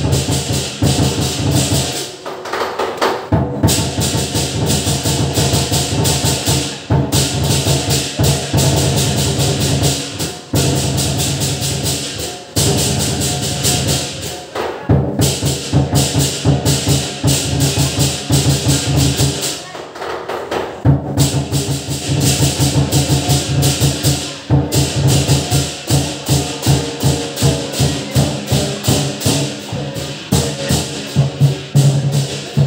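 Lion dance percussion: a large Chinese drum beaten in fast, driving strokes with clashing cymbals, broken by a few brief pauses.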